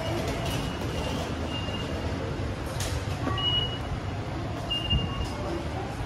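Underground railway station concourse ambience: a steady low rumble and background hubbub, with a few sharp clicks and three short high electronic beeps.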